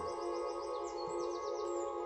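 Steady ambient music drone of held tones, with faint high bird chirps over it, a quick run of chirps about a second in.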